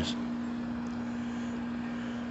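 A steady low hum over a faint even hiss, unchanging throughout.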